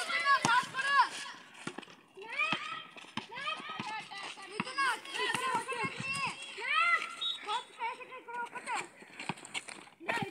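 Children shouting and calling to one another during a basketball game, many voices overlapping, with a short lull about two seconds in. Scattered short, sharp knocks sound among the shouts.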